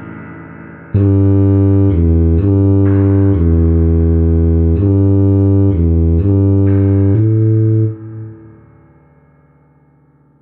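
A tuba playing a slow bass line: a low note dying away, then about ten sustained, connected low notes, the last one held and fading out near the end.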